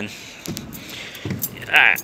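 A man's short vocal sound near the end, over low, steady background noise.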